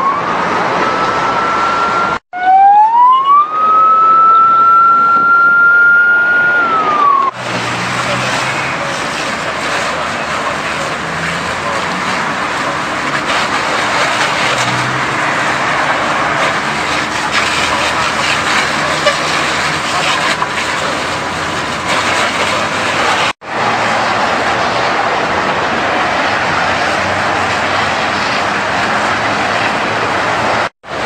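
A fire engine's siren wailing, its pitch rising and falling, for about the first seven seconds. Then a steady loud hiss of a fire hose spraying water onto burning truck wheels, the spray hitting hot tyres and metal.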